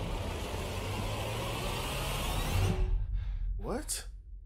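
Film trailer soundtrack: a steady, noisy rumble that cuts off sharply about three seconds in, followed by a short rising tone near the end.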